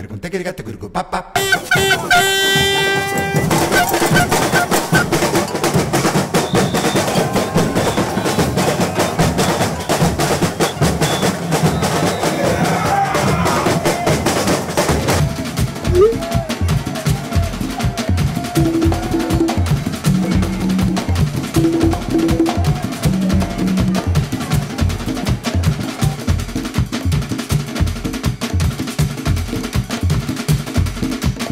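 Drumming in a fast, steady rhythm, with snare-type rolls and wooden clicks. It grows more regular and prominent from about halfway, with short low pitched notes over it. A held pitched note sounds about two seconds in.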